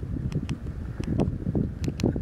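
Wind buffeting the microphone in a steady low rumble, with a few short sharp clicks from the keypad buttons of a handheld transceiver being pressed.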